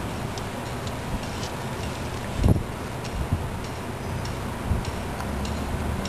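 Steady outdoor background noise with faint, irregular little ticks scattered through it, and one dull thump about two and a half seconds in, the loudest moment.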